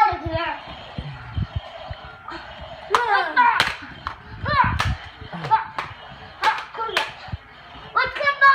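Children's short wordless shouts and fighting noises during toy-weapon play-fighting, with several sharp smacks, a few of them close together in the second half.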